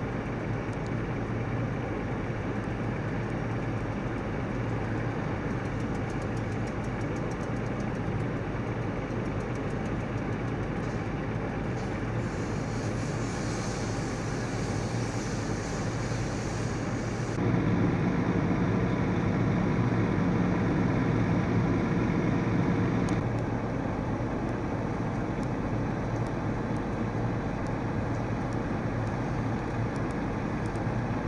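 Steady engine drone of fire apparatus running at a vehicle fire. About halfway through, a power saw cuts into the pickup's sheet-metal hood, adding a high hiss for a few seconds and then a louder, steady saw whine for about five seconds before it stops.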